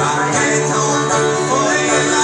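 Banjo and acoustic guitars playing together live in a bluegrass-style folk tune, with the banjo picking over steady guitar strumming.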